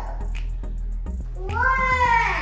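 A young child's high-pitched, drawn-out call near the end, rising and then falling, over background music.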